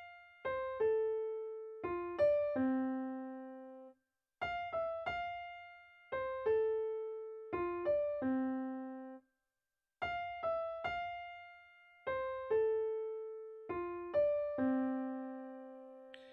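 Piano playing a slow single-note right-hand melody: F, E, F, then falling through C, A, F and D to a low C that rings out. The phrase is played three times with short pauses between.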